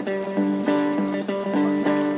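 Bonehead Customz FlyWheel three-string fretless electric slide banjo, amplified and played with a slide: quick picked notes, about four a second, moving between pitches over a recurring low note.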